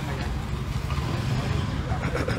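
Street traffic noise: a steady low motorbike engine rumble, with people talking in the background.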